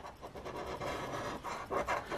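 A coin scratching the latex coating off a paper scratch-off lottery ticket: a steady rasping scrape of metal on card.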